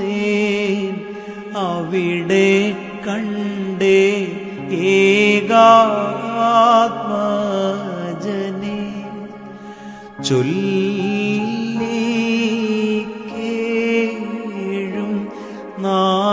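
Instrumental interlude of a Malayalam Christian devotional song, played on electronic keyboard: a wavering lead melody with pitch bends over sustained chords. It dips quieter just before ten seconds in, then comes back sharply with a downward slide.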